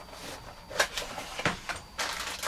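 Small cardboard box being opened and its bagged tie-down hardware handled: light scuffing with two sharper knocks, about a second and a second and a half in.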